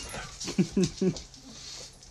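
A dog whimpering: three short whines, each falling in pitch, in quick succession about half a second to a second in.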